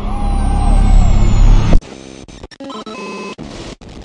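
Electronic intro sting: a swelling whoosh over a deep rumble builds for about two seconds and cuts off abruptly. It is followed by stuttering, glitchy electronic blips and short tones.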